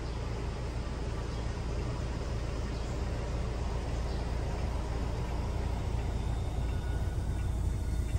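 Electric motor of the powered partition between the cab and rear cabin of a Toyota Hiace Commuter VIP conversion, running steadily as the panel rises to close. It cuts off near the end, when the partition is fully closed.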